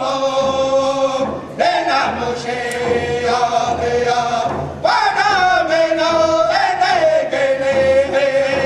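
A group of singers singing a Native American hand drum song together over a steady hand drum beat. The voices break off briefly twice, at about one and a half seconds and near five seconds, each time coming back in high and sliding down into the next phrase.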